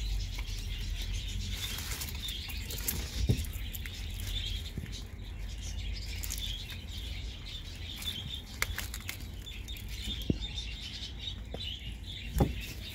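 Small birds chirping and twittering in the background over a steady low rumble, with a few sharp clicks.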